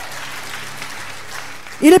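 A congregation applauding: an even, steady patter of clapping, with a faint low hum beneath it.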